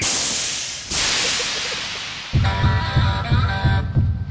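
Two hiss-like noise swells, the second slowly fading, followed a little past halfway by background music with a steady beat.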